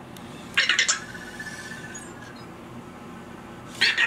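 Anki Vector robot making its electronic chirps and beeps: a burst of chirps about half a second in, trailing into a held high beep for about a second, then another burst near the end.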